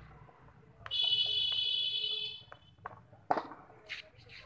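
A steady, high-pitched alarm-like beep or buzzer tone lasting about a second and a half, starting about a second in. Near the end comes a single sharp knock of a cricket ball striking.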